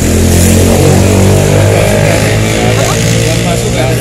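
A motor vehicle engine running loud and steady with a deep hum, swelling in the first second or two and then easing slightly, over faint voices.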